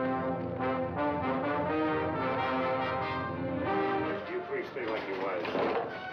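Orchestral film-trailer score with brass playing held chords, turning busier and less steady about four seconds in.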